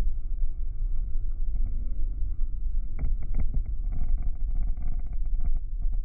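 Steady low rumble of an airliner's cabin in flight: engine and airflow noise. A quick run of light clicks comes about halfway through.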